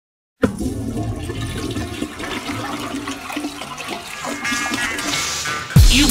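Toilet flushing as the intro of a hip hop track, a rushing, gurgling wash of water; just before the end a heavy beat with deep kick drums comes in.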